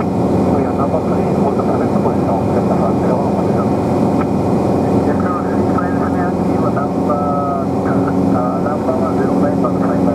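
Steady drone of a light aircraft's engine and propeller in flight, heard from inside the cockpit.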